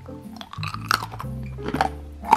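A person biting and chewing a freshly made sugar-roasted nut, a few crisp crunches in a crunch test of the candied coating, over background music.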